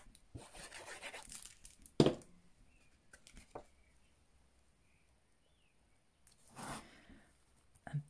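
Paper and card being handled: a rustling slide as a glued cardstock panel is lowered into place, then a sharp tap about two seconds in as it meets the card base. Near the end there is a brief rubbing sweep as hands press the panel flat.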